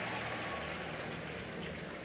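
Crowd noise from a large audience laughing, a dense wash of sound that slowly dies away.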